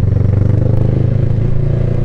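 Motorcycle engine running at steady revs while being ridden in slow traffic, a constant even note.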